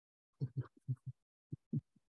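Soft, quiet laughter in a handful of short low pulses, two little runs about a second apart.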